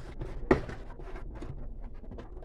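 Rustling and small clicks of a cardboard shipping box and its packaging being handled and opened by hand, with one sharper snap about half a second in.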